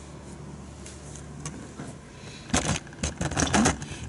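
Low steady room hum, then from about two and a half seconds in, a second or so of irregular clicks and knocks, handling noise as the camera moves from the grand piano to the digital piano.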